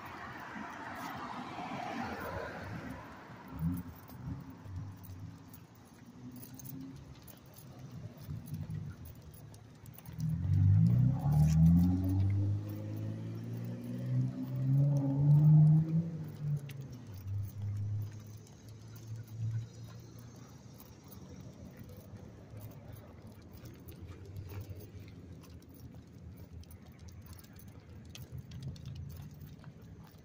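Footsteps on a sidewalk with the light jingle of a dog's collar tags on a walk. About a third of the way in, a vehicle engine rises in pitch for about six seconds and is the loudest sound.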